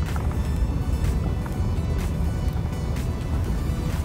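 Ford F-150 pickup truck driving, a steady low road and engine rumble in the cab, with music playing over it and a steady beat about twice a second.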